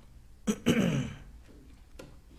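A person clearing their throat once, about half a second in. A short sharp catch is followed by a rasp that falls in pitch, lasting about half a second.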